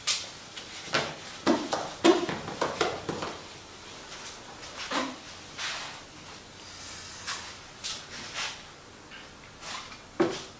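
A cloth wet with white spirit being rubbed over a painted boat hull to degrease it: a run of short, irregular swishes, closest together in the first three seconds and more scattered after.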